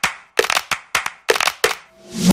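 Soundtrack of sharp, cracking percussive hits in a quick, uneven rhythm, about three or four a second. Near the end a swell grows louder and cuts off.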